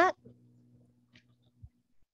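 Near silence: room tone with a faint steady hum, a soft tick about a second in and a short low thump near the end.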